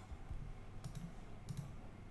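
A handful of faint clicks from a computer mouse and keyboard, spread over the two seconds.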